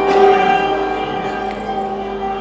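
Santoor, a hammered dulcimer, struck with its curved mallets: a stroke just after the start, then many strings ringing on together and slowly fading.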